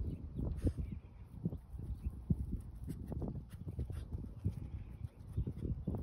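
A small dog sniffing with its nose down in grass: irregular short sniffs and grass rustles.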